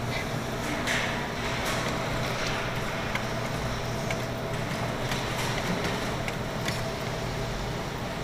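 Steady arcade room hum with a faint held tone and a few light clicks, while the claw machine's claw is worked down onto the plush.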